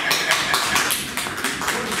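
Applause from a small audience: a quick, uneven run of hand claps from several people.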